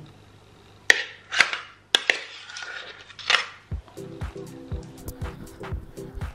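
A metal spoon clinking and scraping as it scoops thick pesto from a blender jar into a glass container: a few sharp clinks and scrapes. About four seconds in, music with a steady beat begins.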